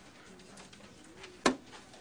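A quiet pause with faint low steady tones, then one sharp click about one and a half seconds in.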